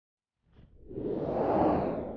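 Whoosh sound effect for a logo reveal: a faint tick, then a rushing swell that builds for about a second and fades away.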